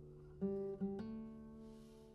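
Classical guitar playing a quiet passage: a chord dies away, then three plucked notes or chords follow quickly about half a second in, the last left to ring.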